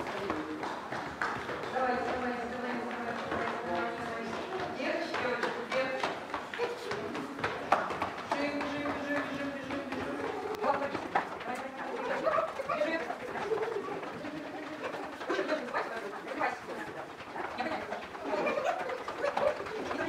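Young children's voices mixed with the quick patter of small feet running on a wooden floor, the sound echoing in a large hall.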